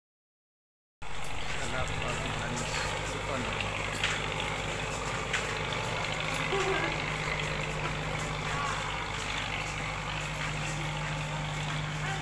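A large engine idling with a steady low hum, under the chatter of people nearby.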